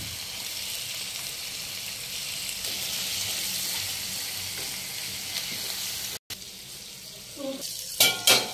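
Chicken and spices frying in oil in a nonstick pan: a steady sizzling hiss that cuts out briefly about six seconds in and comes back quieter, with a few spatula knocks against the pan near the end.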